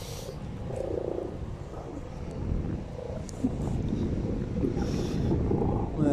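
Wind rumbling on a phone's microphone, with a few faint brief knocks and rustles from the phone being carried.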